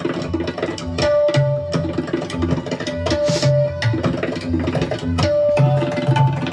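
Several tabla played together in fast, dense strokes: ringing pitched notes from the small right-hand drums sit over deep bass strokes from the left-hand bayan. A short hiss comes about three seconds in.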